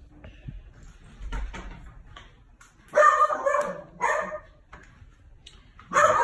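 A dog barking indoors: two loud barks about three and four seconds in, the first one longer.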